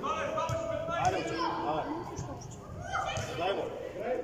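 Several voices shouting and calling out in a large indoor football hall, with a few short thuds of a football being kicked on artificial turf.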